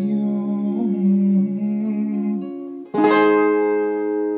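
Acoustic guitar played with sustained notes ringing; about three seconds in, a firm strummed chord rings on and slowly fades.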